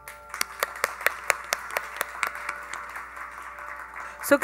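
Audience clapping, a few sharp claps a second over a light patter, with a steady tambura drone fading beneath.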